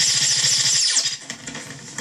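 A sudden loud, rattling, hissing sound effect marking a scene-change wipe; it lasts about a second and then fades.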